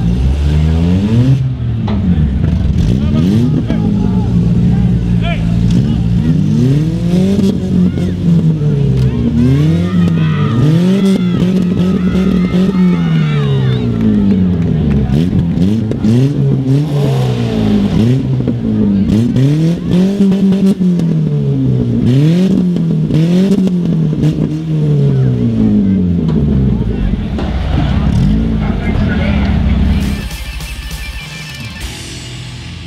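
Demolition-derby compact car engines revving hard, the pitch rising and falling again and again every second or two, as the last two wrecked cars push against each other in the dirt.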